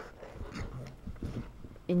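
A pet dog making a few short, quiet sounds.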